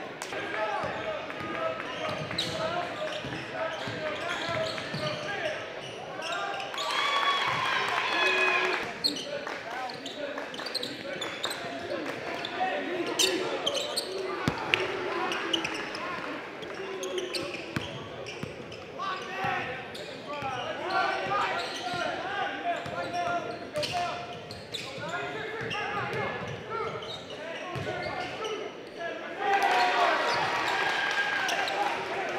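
A basketball bouncing on a hardwood gym floor, with sharp knocks scattered through, over a continuous mix of crowd and player voices that echo in a large gymnasium.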